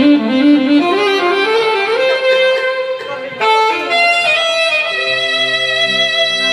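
Live saxophone playing a slow, sliding melody over band accompaniment. About three and a half seconds in, the line changes to long held notes over a low bass part.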